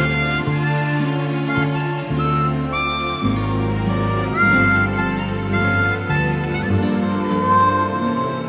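Harmonica solo playing the song's melody in held notes over the live band's accompaniment, with bass and cymbals underneath.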